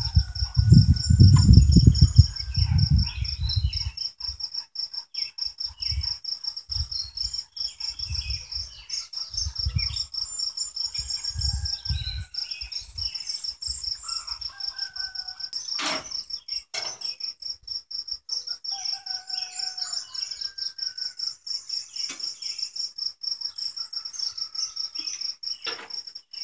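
An insect chirping steadily in a fast, high-pitched pulse, with birds chirping now and then. Low rumbling on the microphone in the first few seconds, and a single sharp click about two-thirds of the way through.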